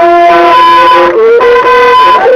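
Ethiopian azmari music: a loud melody of long, held notes that changes pitch about every second, with no break.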